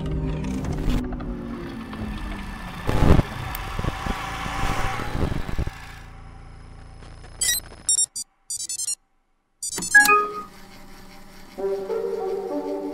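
Cinematic sound-effect intro of a music video: falling tones, a heavy hit about three seconds in, and a rising noisy swell that cuts off suddenly. A low hum follows, then a few short electronic beeps, a moment of silence, a second hit, and the song's opening chords starting near the end.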